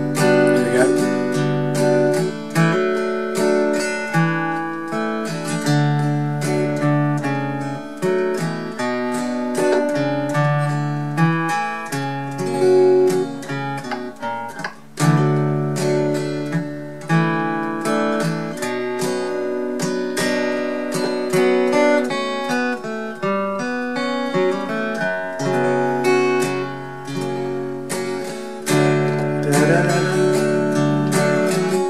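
Acoustic guitar capoed at the second fret, played slowly: picked chords and single notes ringing into one another, with a brief pause about halfway through.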